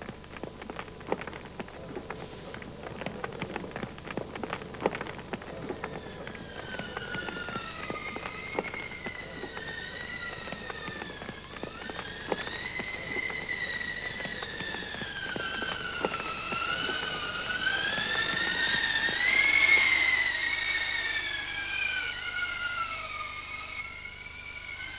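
Crackling and popping, as of wood burning in a stove, through the first half. A wavering high whistle with overtones joins it about a quarter of the way in, gliding up and down, swelling to its loudest past three quarters of the way, then easing off.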